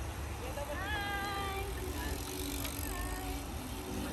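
Steady low rumble of wind and tyres on the microphone of a moving bicycle during a group ride. Voices call out about a second in and again around three seconds.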